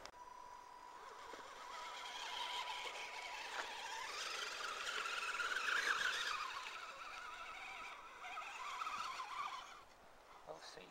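Axial SCX10 Deadbolt RC crawler's electric motor and gearing whining as it climbs a dirt bank, the whine rising in pitch and loudness to a peak about six seconds in, easing, then rising again near the end. A thin steady high tone runs beneath it for the first half.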